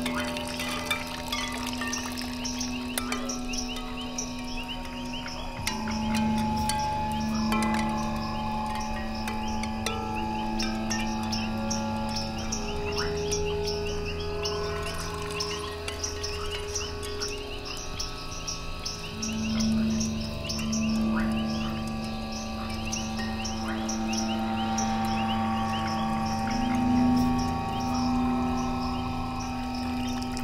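Ambient sound-art piece: long held low tones that shift in pitch every few seconds, over a dense patter of small high ticks throughout.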